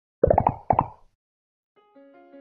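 Cartoon-style pop sound effects for an animated logo: a quick run of four pops, then two more, each a little higher in pitch than the one before. Soft music begins just before the end.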